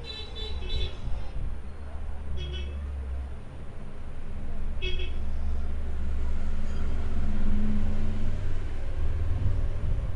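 A steady low rumble, growing louder through the middle, with three short high-pitched toots: one near the start, then two more about two and a half seconds apart.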